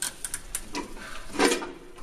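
Scuffling and handling noises as several people move a restrained man out of a restraint chair: rustling clothing and a few light clicks, with a louder short burst of noise about one and a half seconds in.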